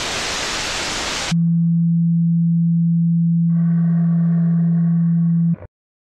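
Loud burst of white-noise static lasting about a second, then a steady low electronic tone, with a fainter higher hum joining partway through; it cuts off suddenly near the end.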